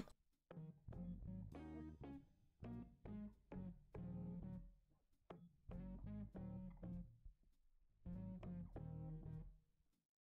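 Faint background music of plucked, guitar-like notes over a bass line, coming in short phrases with silent gaps between them.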